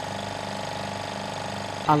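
Laboratory vacuum pump running steadily for vacuum filtration, a constant hum with a fast, even pulse.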